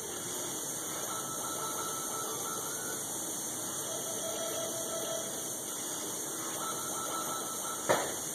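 A steady hiss with faint, intermittent thin tones in it, broken near the end by one sharp click.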